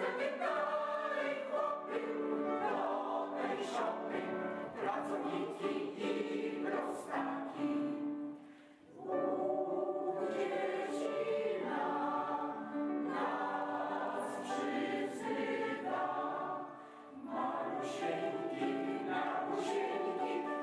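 Mixed choir of women's and men's voices singing, with two brief breaks between phrases, about nine and seventeen seconds in.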